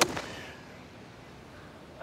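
Golf club striking a golf ball off the turf: one sharp crack right at the start, with a short fading tail.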